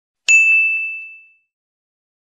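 A single bright notification-bell ding sound effect, struck about a third of a second in and ringing away over about a second.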